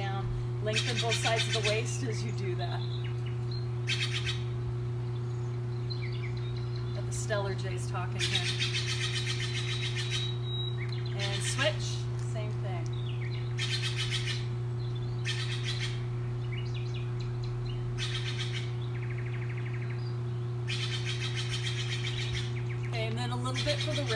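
Songbirds singing, repeated bursts of rapid high trills and chirps every few seconds, over a steady low hum.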